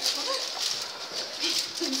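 Background chatter of a small group of people, with a few short, brief bits of voice.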